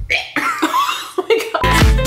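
A woman's short bout of coughing, then upbeat dance music with a steady beat comes in about one and a half seconds in.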